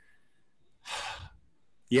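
A single audible breath, a short sigh-like intake of air, about a second in, in an otherwise near-silent pause in conversation.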